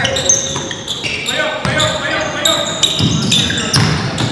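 A basketball bouncing on a hardwood gym floor during play, with sneakers squeaking and players calling out. The room's echo lies over all of it.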